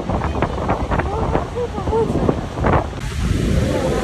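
Steady roar of Niagara Falls and its churning water, with wind buffeting the microphone. About three seconds in it changes abruptly to the rush of fast river rapids.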